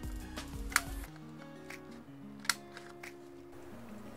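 A hand-held heart-shaped craft paper punch clicking twice as it is pressed through paper, the clicks well apart, over soft background music.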